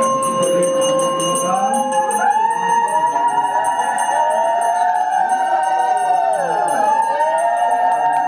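Several conch shells blown together at an aarti: one steady tone first, then from about two seconds in several more join, overlapping and bending up and down in pitch. A small bell rings high above them during the first few seconds.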